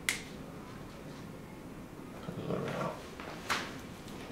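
Two sharp pops from finger joints being adjusted by hand: chiropractic cavitations of the proximal interphalangeal joints, one right at the start and another about three and a half seconds in.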